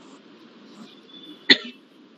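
A single short cough about one and a half seconds in, over a faint steady background hiss.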